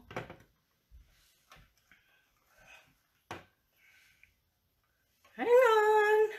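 Light, scattered taps and clicks of broccolini being arranged on a metal baking tray. Near the end, a woman's voice makes a long, held sound.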